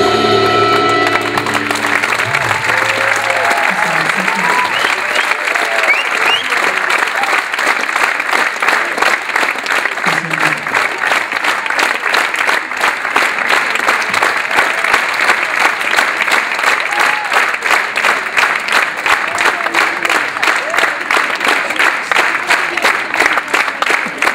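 The band's final chord, with brass and saxophone, ends about a second in; then a theatre audience applauds without a break for the rest of the time.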